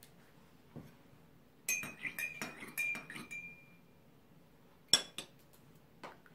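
A teaspoon stirring milk into tea in a china teacup, clinking quickly against the cup's side with a ringing tone for about two seconds. About five seconds in comes one sharp clink as the spoon is set down on the saucer.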